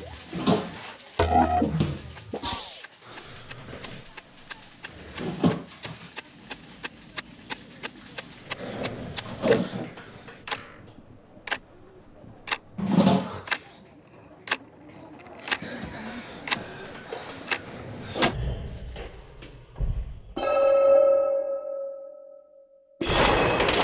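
Desk and office handling sounds: a long run of sharp clicks and knocks, some in quick strings, with a few heavier thuds. About two seconds before the end a steady buzzing tone sets in.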